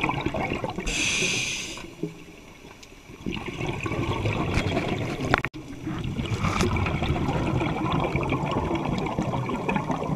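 Scuba diver breathing through a demand regulator underwater: a hissing inhale about a second in, then exhaled bubbles rumbling and gurgling.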